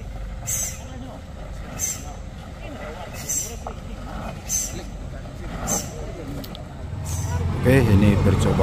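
Diesel truck engines running on a rough, steep dirt road, with short high hisses repeating about once a second. An engine grows clearly louder near the end.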